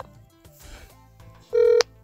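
A single short telephone beep, one steady tone lasting about a third of a second and cutting off sharply, about one and a half seconds in, heard over the phone line after a near-quiet pause.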